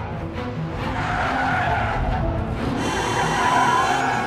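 Car tyres squealing as a car skids on the road, building from about a second in and loudest near the end, over background music.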